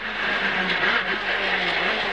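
Renault Clio S1600 rally car's 1.6-litre four-cylinder engine running hard at fairly steady revs, heard from inside the cabin, with the note dipping briefly twice.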